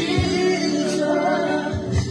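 A gospel worship song sung by a group, with a held bass note underneath and two drum beats.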